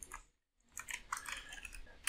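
Computer keyboard typing: a single key click at the start, then a run of faint, quick keystrokes through the second half.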